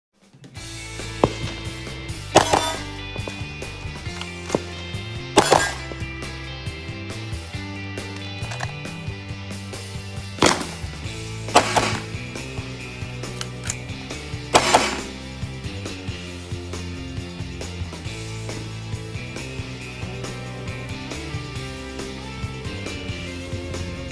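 Background music plays throughout, with about six sharp gunshot reports over it at irregular intervals, the loudest early on and around the middle.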